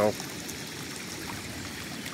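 Floodwater running across flooded pasture, a steady, even rush.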